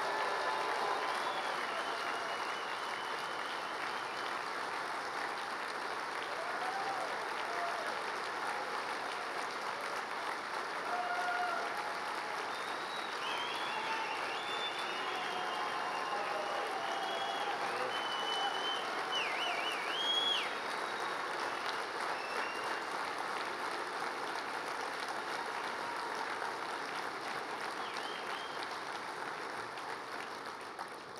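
A large audience applauding steadily. The applause swells at the start and tapers off near the end.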